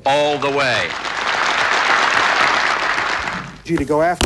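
Audience applause comes in about a second in, after a man's last spoken words, and dies away shortly before the end.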